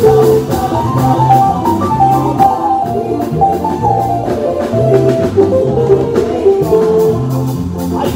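Live makossa-style African praise music: an electronic keyboard plays the lead lines a guitar would usually take, over a repeating bass pattern and steady percussion.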